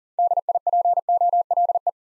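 Morse code sent at 40 words per minute as a single steady beeping tone keyed in quick dots and dashes, spelling out the word "DIPOLE".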